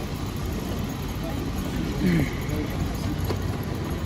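Small suitcase wheels rattling steadily over paving stones amid street noise, with a brief voice about halfway through.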